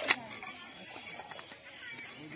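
A small cardboard sweets box being opened by hand, with one sharp click right at the start and light handling noise after it. Faint voices in the background.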